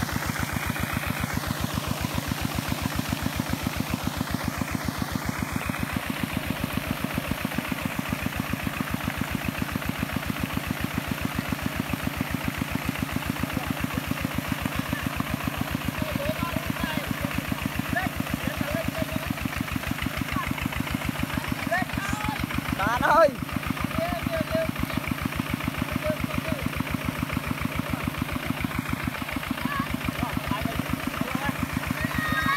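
Kubota walking tractor's single-cylinder diesel engine running steadily with an even firing beat, its cage wheels churning in deep paddy mud where the tractor is stuck. Voices call out faintly in the second half, with one brief loud shout about three-quarters of the way through.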